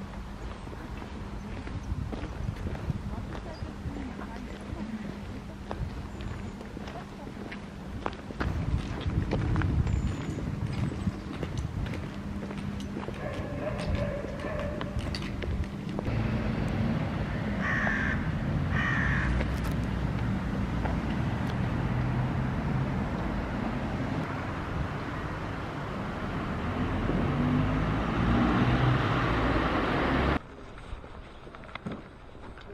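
Outdoor city ambience recorded while walking: footsteps and distant voices. A louder low traffic rumble comes in about halfway through.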